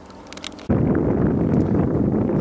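Wind buffeting the camera microphone, a loud low rumble that starts abruptly less than a second in, after a few faint clicks.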